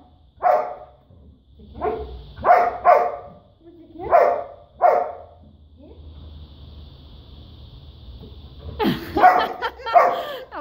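Dog barking in short single barks, about six in the first five seconds, then a quick run of barks near the end, while being teased with a toy.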